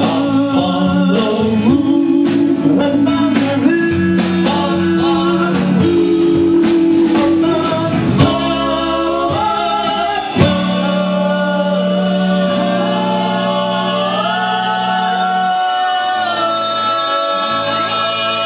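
Live rock band with electric guitars and drums, several men singing in harmony. About ten seconds in there is a sharp hit, after which the drumming thins out and the voices hold long notes together over a sustained chord.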